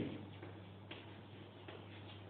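Chalk writing on a blackboard: faint taps and light scratches as letters are formed, over a low steady electrical hum.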